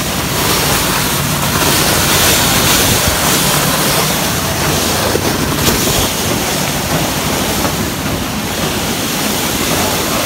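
Wind buffeting the microphone, a loud steady rush, with a low steady hum underneath.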